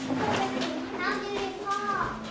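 Quiet voice sounds without clear words: one held low tone, then short rising pitched sounds in the second half.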